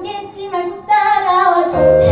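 A teenage girl singing a musical-theatre song over a backing track, holding a long falling note about a second in. The accompaniment's low beat comes back in near the end.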